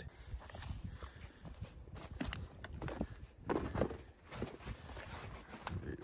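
Footsteps walking over dry grass and dirt at an uneven pace.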